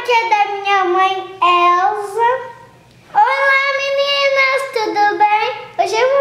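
A young girl singing in a high voice: three phrases with long held notes that slide downward in pitch, the longest held through the second half.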